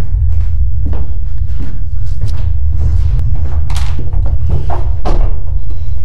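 Knocks, thuds and clicks of someone hurriedly moving about a bathroom and handling things, over a loud, steady low rumble.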